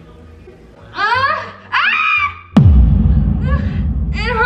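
A young woman wailing in two drawn-out, wavering cries, faking pain. About two-thirds of the way in, a sudden deep boom with a fast falling sweep sets off a loud, sustained low rumble.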